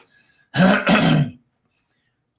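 A person clearing their throat once, about half a second in, in two quick parts lasting under a second.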